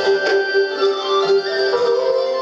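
A traditional Vietnamese instrumental ensemble playing. A bowed fiddle holds one long, steady note while plucked zithers add sharp notes about every half second.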